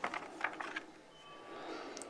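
Faint small clicks and paper rustles of a printed comic book being handled and its pages turned, with a faint steady thin tone in the second half.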